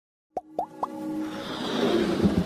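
Animated logo intro sound effects: three quick pops about a quarter second apart, each sweeping up in pitch, then a swelling whoosh with a held tone building into the intro music.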